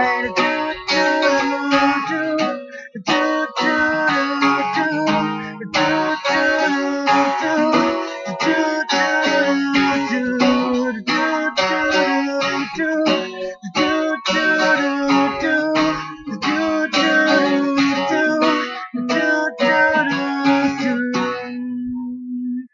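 Acoustic guitar strummed in a steady rhythm, with a few short breaks between phrases; a final chord is held near the end and then stops.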